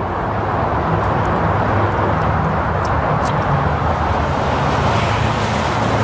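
A motor vehicle engine running steadily: a continuous low hum over a wash of outdoor noise.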